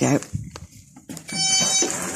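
Intruder alarm sounding its electronic entry-warning tone, a steady high-pitched beep that starts about a second and a half in: the door has been opened and the alarm has not yet been disarmed.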